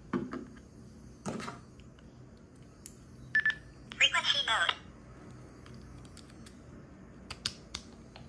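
Plastic handling clicks and knocks as a Bluetooth dongle is fitted into a handheld two-way radio's accessory jack. A single short electronic beep comes about three and a half seconds in, followed at once by a loud, warbling burst of electronic tones lasting under a second. A few sharp button clicks come near the end.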